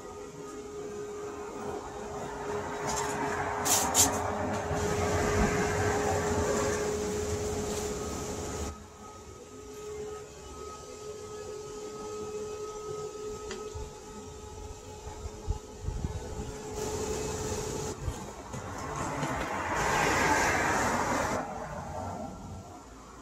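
Built-in electric blower motor of an inflatable basketball hoop game running with a steady hum while the vinyl unit fills with air. Louder rushing air swells a few seconds in and again near the end.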